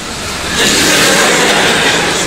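Live audience applauding: loud, dense clapping that builds over the first half second and then holds steady.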